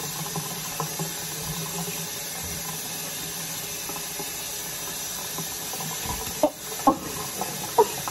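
Kitchen sink faucet running, its stream splashing onto wet hair and into the sink with a steady hiss. A few short, sharp sounds come near the end.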